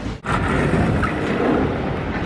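City street noise with traffic: a steady rumble and hiss of passing vehicles. The sound drops out for a moment just after the start, then runs on evenly.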